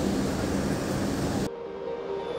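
Bus cabin noise: a steady engine and road rumble with hiss, which cuts off abruptly about one and a half seconds in, giving way to faint music.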